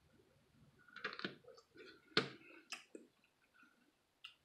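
Boiled crab legs being picked apart by hand: shells cracking and clicking in a few short, sharp snaps, the loudest a little after two seconds in.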